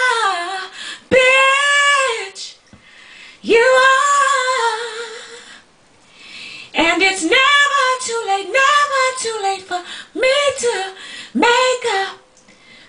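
A woman singing soul a cappella, long held notes that bend up and down, in phrases of a second or two with short breaths between.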